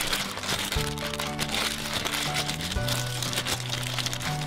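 Foil wrapper crinkling as hands tear open a blind-box figure's packet, over background music with sustained bass notes that change every second or so.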